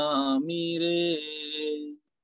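A voice singing a Gujarati devotional bhajan: it wavers on a sung syllable, then holds one long note that fades out and stops near the end.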